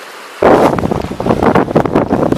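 Small waves washing quietly over shore stones, then, about half a second in, loud gusting wind noise on the microphone over splashing shallow water.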